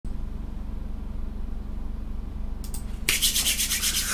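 A low steady electrical hum, then from about three seconds in a loud rasping, rubbing noise with a fast, even grain.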